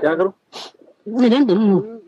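A man's voice speaking, with one long drawn-out syllable in the second half.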